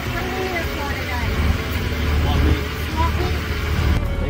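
Pickup truck engine heard from inside the cab as a steady low rumble, slightly louder in the middle, with indistinct talking over it.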